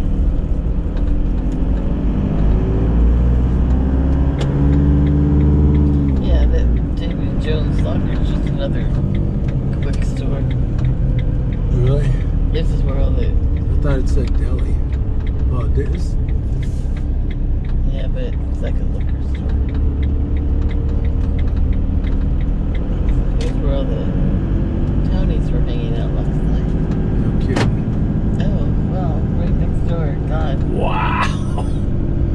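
Van engine and road noise heard from inside the cab while driving, the engine note climbing for a few seconds near the start and again near the end as it pulls away and speeds up.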